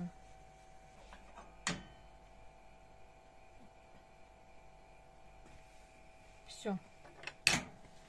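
Stainless-steel saucepan of caramelizing sugar being moved and swirled on a gas stove's metal grate: a sharp click about two seconds in and a louder metal clank near the end, over a faint steady hum.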